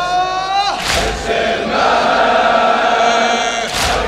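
A male latmiya reciter holds one long sung note that breaks off about a second in. A large crowd of mourners then chants the refrain together. Two loud unison strikes, about three seconds apart, are the crowd beating their chests (latm).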